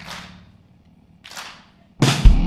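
A quiet break in a live band's song: a low held note dies away and two soft cymbal strokes ring out briefly, the second about a second and a quarter in, before the full band with drum kit comes back in at the very end.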